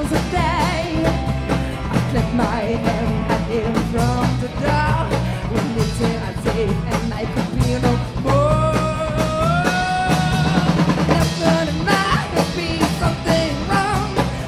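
Live rock band playing: electric guitar, electric bass and a drum kit under a sung vocal. About eight seconds in, the voice slides up into a note and holds it for about two seconds.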